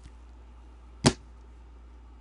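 A single sharp click about a second in, from gloved hands handling trading cards and packs, over a faint steady low hum.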